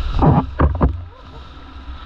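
Stand-up paddleboard wipeout in surf: whitewater crashing over a board-mounted action camera in three heavy splashes within the first second. The sound then turns muffled and quieter as the camera is swamped.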